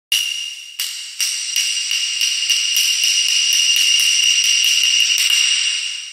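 Added sound effect over the opening title: a high, metallic bell ringing with repeated sharp strikes, about three a second, fading away near the end.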